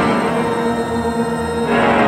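Church organ music holding sustained chords, blended with electronics. The upper notes thin out partway through, then the full sound comes back in near the end.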